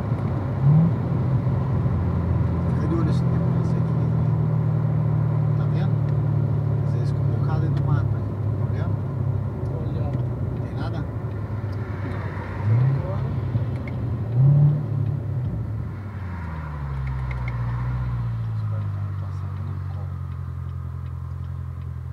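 Chevrolet Corvette Z06's V8, heard from inside the cabin. It runs steadily at cruise, with brief rising blips of revs on the downshifts, three times. In the last few seconds the revs slide down and settle at idle as the car comes to a stop.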